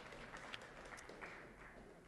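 Near silence: faint room tone with a few soft ticks of paper being handled as sheets of notes are turned over on a pulpit.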